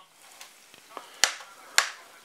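A kitchen utensil clicking and knocking against a frying pan as reheated potatoes and a cutlet are stirred: a few faint taps, then two sharp clicks in the second half.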